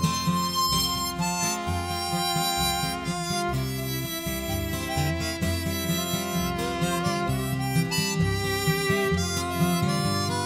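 Instrumental break in a cowboy song: a free-reed instrument plays the lead melody over acoustic guitar and a moving bass line.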